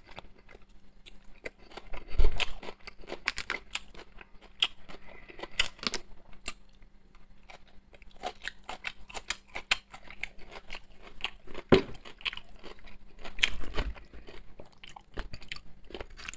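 Close-up chewing and mouth sounds of a man eating, with crunching as he eats a forkful of cabbage salad. Many light clicks run through it, and there are louder knocks about two seconds in and near twelve seconds.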